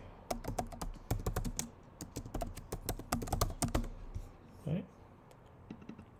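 Typing on a computer keyboard: a quick run of key clicks for about three and a half seconds, then a few scattered keystrokes.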